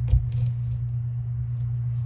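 Steady low hum, with one short, sharp knock just after the start from hands working modeling clay over the tabletop.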